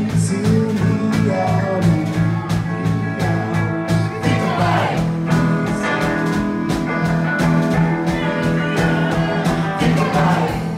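Live rock band playing: electric guitar over held bass notes and a steady drum beat.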